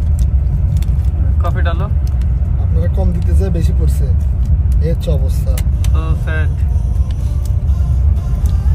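A bus running at speed on a highway, heard inside the cabin as a steady low rumble from the road and engine. Voices talk briefly now and then over it.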